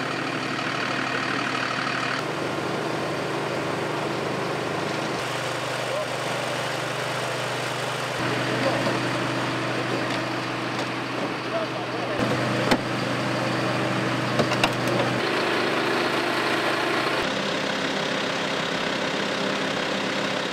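Idling engines of emergency vehicles at an accident scene, running with a steady drone that changes pitch abruptly several times, over a background of indistinct voices of the rescue crews. A few sharp clicks sound later on.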